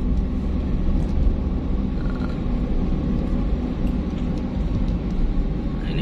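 Steady low rumble of a moving car heard from inside the cabin: engine and tyres on asphalt.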